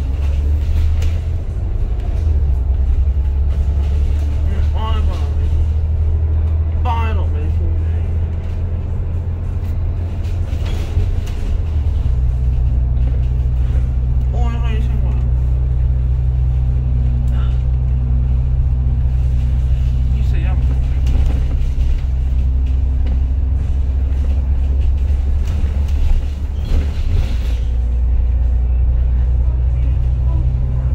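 Double-decker bus's diesel engine running, heard from inside the cabin as a steady low drone over road noise. The drone shifts in pitch about twelve seconds in.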